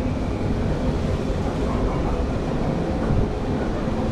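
Steady rushing and rumbling on board a chair-o-plane (chain swing ride) spinning at speed: wind over the microphone mixed with the ride's running noise.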